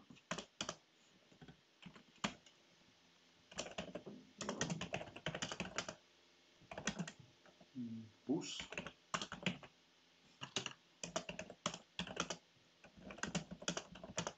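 Typing on a computer keyboard: several quick bursts of keystrokes with short pauses between them.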